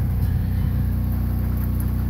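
Diesel generator running at a steady speed, a low even drone, while it charges a battery bank through an inverter/charger.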